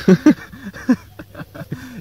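A man's voice making short vocal sounds without clear words: two loud bursts right at the start, then a few quieter, brief ones.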